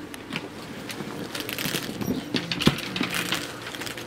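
Small metallic clinks and rustling as a handbag's metal chain strap and leather body are handled on a glass display counter, with one sharper click about two-thirds of the way through.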